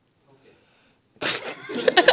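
A balloon heated over a candle flame bursts with a sudden loud bang about a second in, followed at once by startled exclamations from the people around it.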